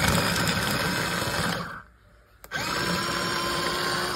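Cordless USB-rechargeable mini electric food chopper running in two bursts with a short pause between, its blades chopping red onion. The second burst carries a steady whine from the motor.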